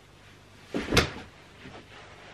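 Two quick knocks or thuds, a lighter one followed a quarter of a second later by a louder one, about a second in.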